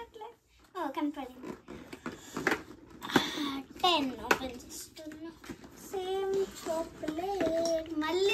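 A young girl talking, with a few sharp clicks from her fingers working the cardboard doors of a chocolate advent calendar.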